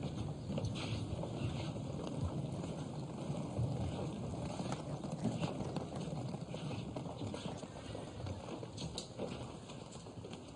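Footsteps of two people walking along a carpeted corridor, a steady run of soft steps.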